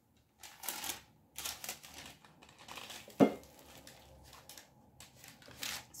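Plastic packaging wrap crinkling in several short bursts, with one sharp click about three seconds in as the rice cooker's lid is snapped shut.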